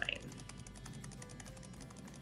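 Fairly quiet, rapid run of computer mouse clicks as a button is pressed over and over.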